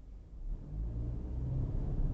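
Car engine and road rumble as the car pulls away from a standstill and accelerates; the sound is quieter for a moment at the start, then a low engine note rises a little and holds.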